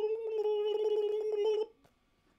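A high, steady held note, likely a drawn-out vocal sound, with light clicking over it; it stops about a second and a half in.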